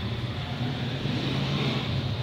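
A steady low hum over a constant hiss, like a motor running without a break.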